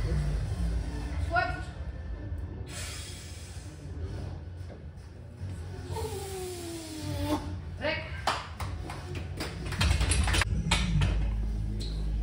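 Background music with voices over it during a heavy barbell back squat. About six seconds in comes a long falling vocal cry, followed by a quick run of sharp clacks.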